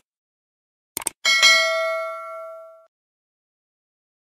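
Subscribe-button sound effect: two quick mouse clicks about a second in, then a single bell ding that rings on and fades over about a second and a half.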